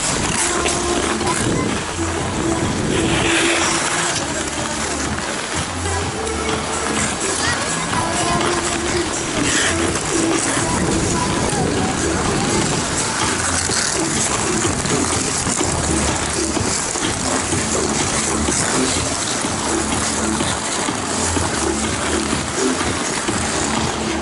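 Music and a crowd of voices at a busy outdoor ice rink, over a steady hiss from ice skates scraping the ice.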